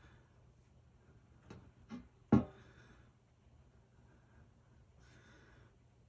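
Quiet handling of cotton rounds smeared with petroleum jelly: two soft taps about a second and a half and two seconds in, over a faint steady low hum.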